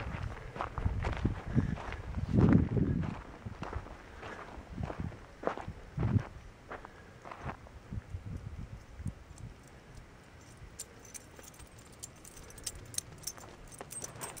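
Footsteps of a person walking on a sandy dirt trail, an irregular run of steps and low thuds that grows quieter after about halfway.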